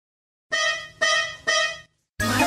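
Three identical short tooting notes of the same pitch, half a second apart, each fading quickly, opening a cheerful musical intro.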